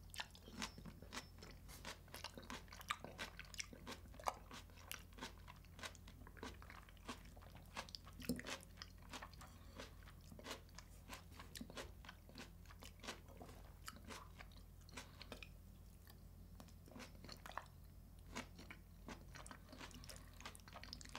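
Close-miked chewing of a crunchy vegetable salad of peppers and cucumber with herring: a dense run of crisp, quick crunches and bites as the food is chewed.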